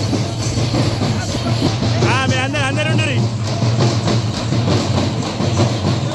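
Procession drumming and crowd noise, a dense rapid clatter of beats over a steady low hum. About two seconds in, a shrill, fast-warbling whistle-like call sounds for just over a second.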